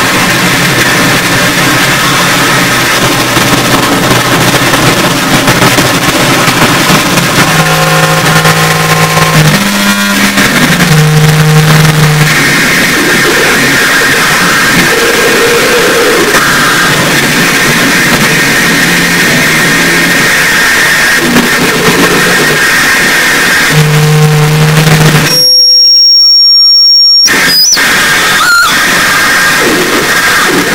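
Harsh noise music from live electronics: a loud, dense wall of distorted noise, with low droning hums cutting in and out. Near the end the wall briefly gives way to a piercing high tone for under two seconds, then the noise returns.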